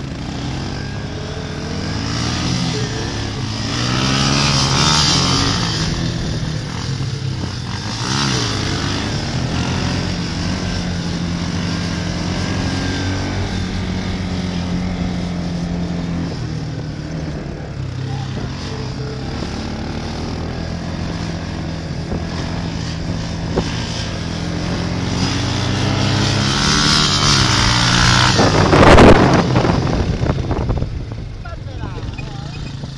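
Huansong 350 quad bike's engine running under throttle while the quad is held up in a wheelie, its pitch rising and falling as the rider works the throttle. The engine gets louder towards the end, loudest just before the end.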